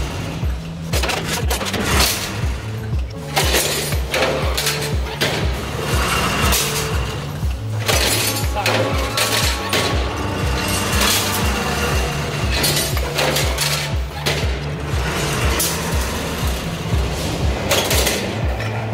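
Background music with a steady beat and bass line. Over it come repeated sharp metallic clanks and clatter from an automatic rebar straightening and cutting machine handling steel bars.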